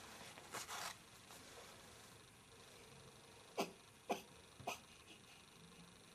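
Sleeping newborn baby making small sounds: a breathy snuffle about half a second in, then three short, sharp little noises about half a second apart past the middle, like tiny hiccups or sneezes.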